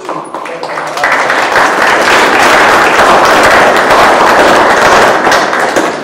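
Audience applauding: many hands clapping that swell about a second in, hold loud and steady, and die away near the end.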